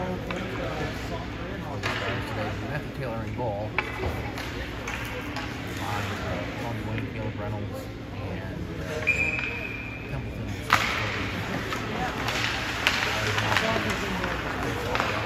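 Ice hockey rink sound: indistinct voices of players and spectators, with a brief steady high tone about nine seconds in. About two-thirds of the way through, a sharp crack of sticks at the faceoff is followed by skate blades scraping the ice and sticks clattering as play starts.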